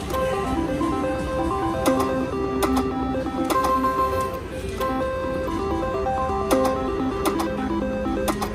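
Slot machine playing electronic tones: a stepping melody of beeps with sharp clicks scattered through it, as the reels spin, stop and pay a small line win.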